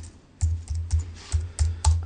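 A handful of irregular key taps on a computer keyboard: sharp clicks, each with a dull knock, about two or three a second, as the verse is looked up.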